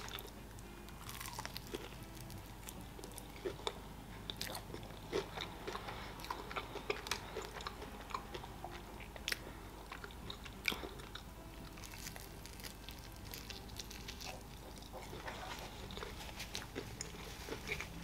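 A person chewing breaded fried chicken wings at close range, with many short, irregular crunches and crackles of the crispy coating.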